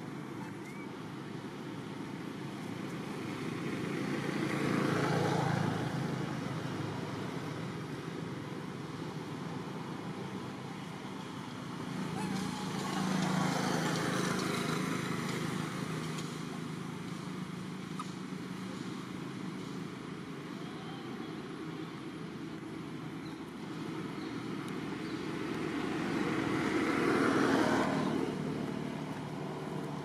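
Road traffic: a steady rumble from vehicles, with three passing by that swell up and fade away, a few seconds in, around the middle, and near the end.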